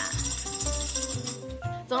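A tambourine shaken, its jingles rattling until about a second and a half in, over background music with a bass line.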